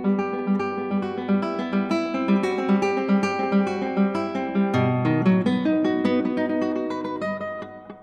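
Background music: acoustic guitar playing plucked notes over a repeating low note, fading out near the end.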